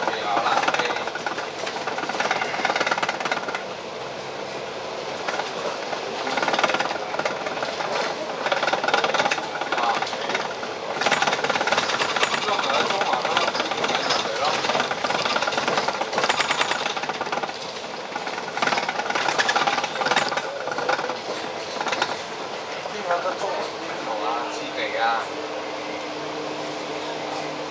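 Interior of a Volvo Olympian double-decker bus under way: engine and road noise with a fast rattling of the bodywork, mostly in the middle, and passengers' voices at times. A steady low hum sets in near the end.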